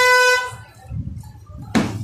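A single short horn honk, one steady buzzy tone about half a second long at the start. About a second and a half later comes a sudden sharp swish of noise.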